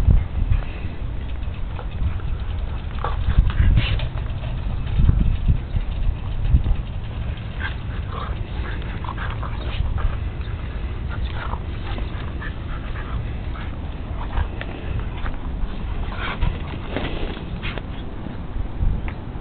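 An adult Siberian husky and a young puppy play-fighting, with many short dog vocalizations scattered throughout, more of them in the second half, over a steady low rumble.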